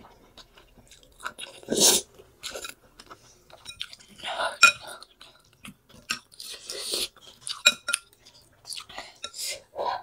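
Close-up eating sounds of noodle soup: chewing and slurping wet noodles in irregular bursts, with a fork and spoon clinking against a glass bowl a few times near the middle and toward the end.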